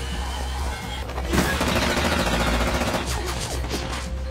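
Automatic gunfire in a cartoon's soundtrack: a rapid rattle of shots starting about a second and a half in, over a dramatic background score.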